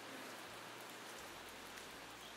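Faint, steady hiss of light rain falling on grass and foliage.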